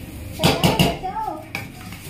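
Metal cooking pots and a serving spoon clattering, a quick burst of clinks and knocks about half a second in, with a brief voice just after.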